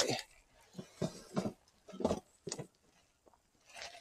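A few faint, scattered knocks and shuffles of handling as a part is put aside, with near silence between them.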